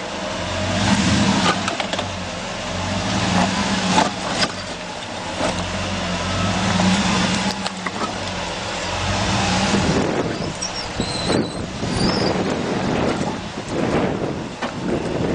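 Ram 2500 pickup's engine running steadily at low speed as the truck crawls over rocks on honeycomb airless tires, with scattered knocks and crunches of stones under the tires.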